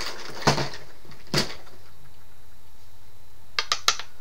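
Small nail-art containers (glitter pots and polish bottles) knocking and clinking as they are picked up and handled: two knocks in the first second and a half, then three quick clicks near the end.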